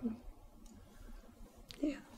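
A pause in conversation: quiet room tone with a couple of faint clicks, then a short spoken "yeah" near the end.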